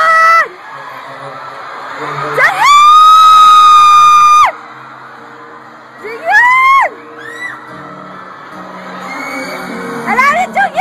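A fan right by the microphone screams one long high-pitched scream starting about two seconds in, then a shorter one around six seconds, over live band music in an arena with sustained low chords and crowd noise.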